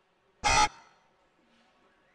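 A short electronic buzzer sounds once, about a quarter of a second long, with a brief fading tail.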